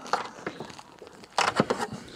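Rigid carpeted boot floor panel being lifted by hand: light rustling and scraping, with a short burst of sharp clicks and knocks about one and a half seconds in.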